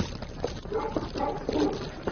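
A dog barking several short barks.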